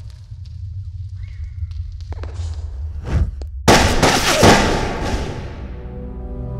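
Trailer sound design: a low rumble that swells in loudness, a brief whoosh about three seconds in, then a sudden loud cinematic impact boom whose ringing tail fades over about two seconds.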